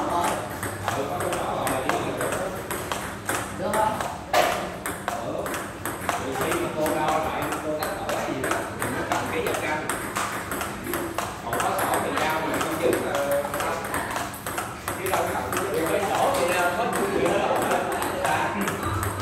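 Table tennis ball in a steady forehand rally: a run of sharp clicks as the celluloid-type ball is struck by the paddles and bounces on the table.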